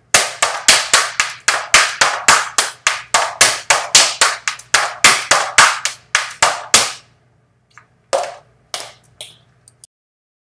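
Tap shoes dancing a time step: a fast, steady run of sharp metal taps for about seven seconds, then a few scattered softer taps after a short pause.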